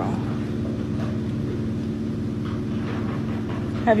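A steady low hum with a faint rumble underneath, unchanging throughout.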